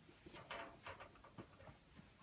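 Faint rustling of a hospital bed sheet being pulled loose from the mattress, a few soft brief noises.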